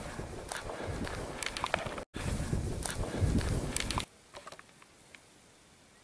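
Footsteps of a hiker on a hill path, with scattered clicks and a low wind rumble on the microphone. The sound cuts out abruptly about two seconds in and then resumes. About four seconds in it drops to near silence, broken only by a few faint clicks.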